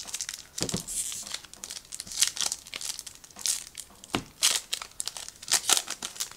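A trading-card pack wrapper being torn open and crinkled: irregular crackling and rustling, with several louder, sharper rips.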